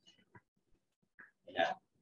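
A pause in talk: a quiet room with one faint click, then a man's short spoken 'yeah' near the end.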